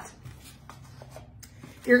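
Faint small clicks and light rustling of craft supplies being handled on a tabletop, as a styrofoam cup is set down and a plastic bag of cotton balls is picked up. A woman's voice starts right at the end.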